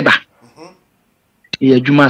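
A man's voice: a short pitched vocal sound at the start and a longer drawn-out one about one and a half seconds in, with a faint murmur between them.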